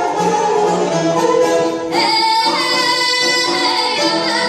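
Bulgarian folk ensemble playing, with a bowed gadulka and plucked tamburas. About halfway through, a female singer comes in on a high, held note.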